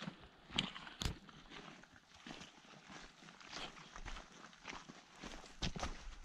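Faint, uneven footsteps of a hiker on a rocky, snow-dusted mountain trail, a scatter of soft scuffs and knocks.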